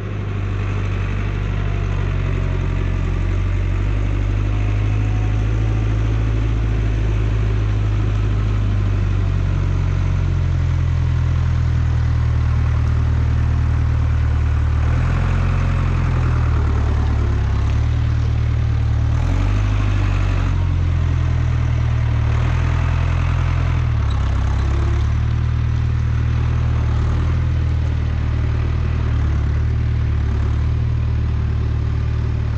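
Tractor diesel engine running close by, a low steady hum whose pitch steps up and down several times as the revs change.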